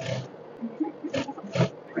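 EMEL industrial sewing machine stitching gathered tulle in short bursts: three quick runs of the needle, one at the very start and two close together past the middle, over a faint steady motor hum.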